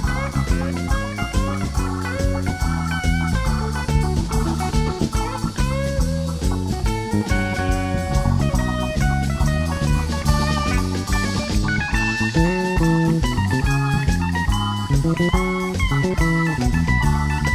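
Live electric band playing an instrumental blues-rock section: an electric guitar takes a lead with bent and sliding notes over bass guitar and drum kit.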